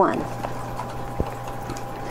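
The end of a spoken word, then a pause of steady background hiss and low hum from a home voice recording, with a single click a little past halfway.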